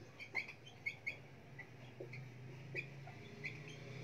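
Whiteboard marker squeaking on the board in short, high chirps, one after another, as words are written.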